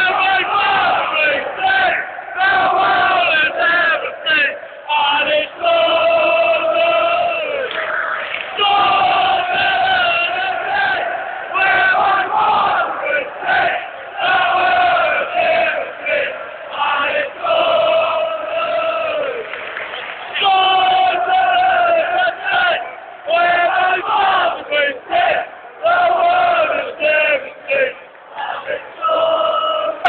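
Large stadium crowd of football supporters singing a chant together, loud and close, in long held notes with short rhythmic breaks between phrases.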